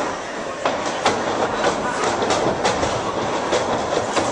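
Crowd noise echoing in a hall, with a string of sharp knocks and thumps at uneven spacing, a few each second, from the wrestling ring.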